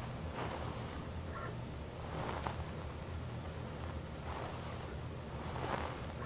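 The autofocus motor of a Nikkor Z 85mm f/1.2 S lens, very quiet, whirring faintly a few times as it drives the lens's large, heavy glass elements through focus. It sits over an amplified hiss of room noise.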